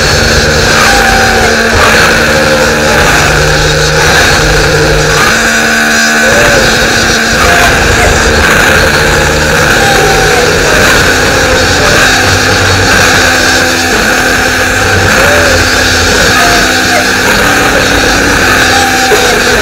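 Loud, dense, heavily distorted electronic music: a wall of harsh noise over held low notes that change every second or two, with a brief break in the bass about six seconds in.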